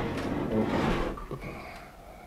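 Projector screen in a wooden frame being turned by hand: a soft sliding rub lasting about a second, fading out.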